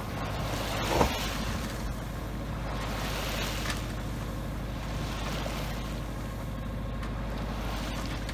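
A sailing yacht's inboard engine running steadily while motoring, with water rushing along the hull and one brief louder splash about a second in.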